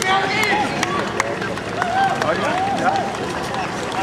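Footfalls of a pack of marathon runners on the road, mixed with people's voices calling out around them, and a few sharp clicks.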